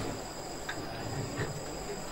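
A lull between voices: faint background noise with a steady high-pitched tone running through it.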